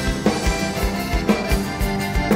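Live band playing the instrumental opening of a folk song: accordion carrying the melody over a steady kick-drum beat, with no singing.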